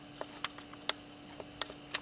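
About half a dozen faint, irregularly spaced clicks over a steady low electrical hum.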